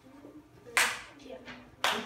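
A brief burst of clapping from a small audience about halfway in, with a second burst starting near the end, amid a few voices.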